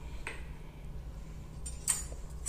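A light clink of a kitchen utensil against a steel bowl near the end, with a fainter click near the start, over a low steady hum.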